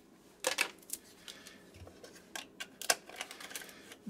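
Irregular light clicks and rustles of a charging cable being untangled and pulled out of a cardboard box.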